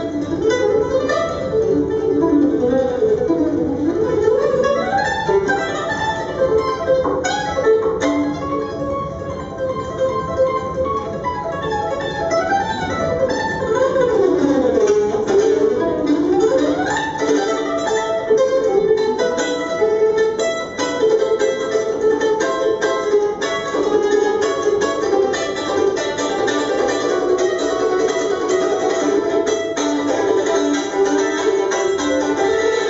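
Solo F-style mandolin played live: dense picked notes with fast runs sweeping up and down in pitch, a few seconds in and again around the middle.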